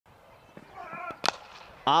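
Cricket bat striking the ball: one sharp crack about a second and a quarter in, the shot that is hit for six.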